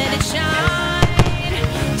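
Music with a held melody line, mixed with fireworks bursts: sharp bangs, two close together about a second in, over the crackle of aerial shells.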